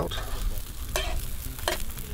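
Folded omelette sizzling in a non-stick frying pan, with a slotted metal spatula scraping and clicking against the pan a couple of times.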